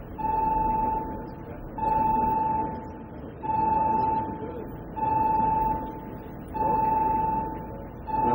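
Electronic alarm beeping: a steady mid-pitched beep about three-quarters of a second long, repeating five times at an even pace of about one every second and a half, over a low steady background noise.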